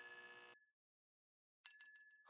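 A metal desk service bell being dinged: the ring from the last strikes fades out in the first half second. After a second of silence, the bell is struck again in quick succession near the end and keeps ringing.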